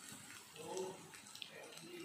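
Faint, steady hiss of mutton curry sizzling in a wok on the stove, with a faint voice briefly a little before a second in.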